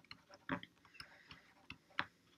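A stylus tapping and ticking on a tablet screen while handwriting, giving a few faint, irregular ticks, the sharpest near the end.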